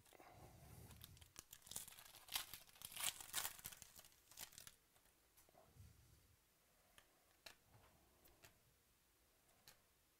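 A foil trading-card pack is torn open and crinkled, a dense run of faint crackling over the first four or five seconds. Then come a few soft clicks as the cards inside are handled.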